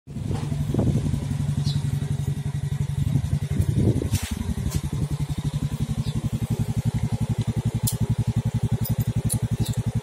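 Vega Force i motorcycle's single-cylinder engine running through an aftermarket Exos exhaust pipe. It is blipped twice in the first four seconds, then settles into idle with a quick, even exhaust pulse.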